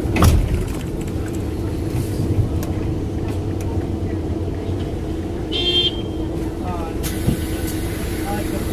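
Engine and road noise heard from inside a large moving vehicle: a steady low rumble with a constant engine hum. A brief high-pitched tone sounds a little past halfway.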